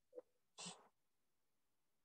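Near silence, broken by two faint brief sounds: a short tone near the start, then a soft breathy puff about half a second in.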